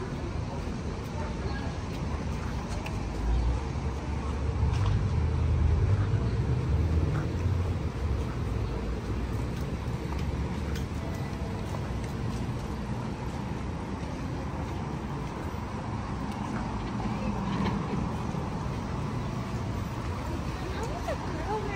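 Outdoor city street ambience with steady background noise; a low rumble swells and fades between about four and eight seconds in.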